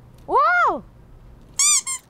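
A short high-pitched squeak, a comic sound effect marking a fumbled toss in a game of gonggi (Korean jacks), about one and a half seconds in, after a shouted 'wow'.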